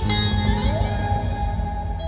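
Alternative rock band playing an instrumental passage live: electric guitar over bass, drums and keyboard. About half a second in, one note glides upward.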